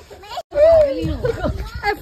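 Excited voices talking and calling out, with one loud drawn-out call just after the sound cuts out for a moment about half a second in.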